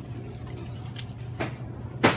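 Steady low hum of a shop's room tone, with light clinking from handling at a checkout counter and a single sharp click about one and a half seconds in.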